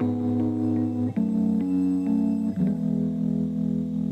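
Instrumental music led by a guitar, with held notes that change every second or so and no voice.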